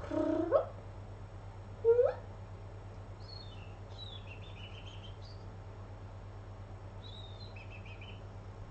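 Domestic medium-hair cat giving two short rising calls: a half-second meow at the start and a brief chirp about two seconds in.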